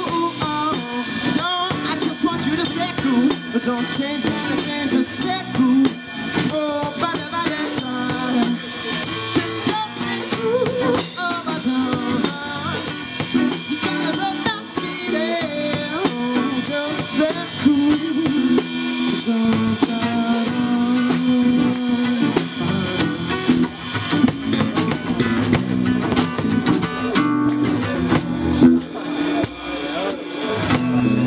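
A small band playing an instrumental jam: a saxophone plays a wavering melody over an electric bass line and a drum kit keeping a busy beat with rimshots on the snare.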